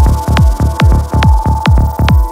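Dark progressive psytrance: a steady four-on-the-floor kick drum at about 140 beats per minute, each kick dropping in pitch into a deep bass thump, under a held high synth note.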